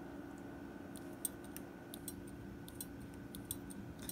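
Faint, scattered small clicks and ticks as the spring-loaded clutch pedal and linkage rod of a die-cast Farmall H toy tractor are worked by hand, over a faint steady hum.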